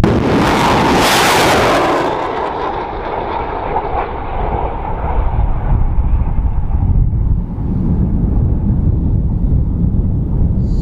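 M142 HIMARS rocket launcher firing a rocket: a sudden loud roar of the rocket motor that peaks within the first two seconds and then fades away gradually over the next several seconds, over a low wind rumble on the microphone.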